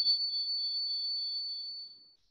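A steady, high-pitched pure tone, held level and then fading out near the end.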